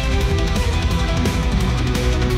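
Heavy rock track generated with Suno, led by electric guitar over a steady drum beat, playing loudly and evenly.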